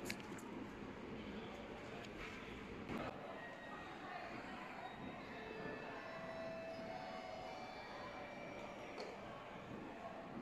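Faint ambience of a large passenger terminal hall: a steady hum with distant, indistinct voices, and a light knock about three seconds in.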